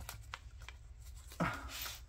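Hands handling the paper pages and tags of a handmade junk journal: faint rustling with a few light ticks, then a short spoken 'oh' near the end.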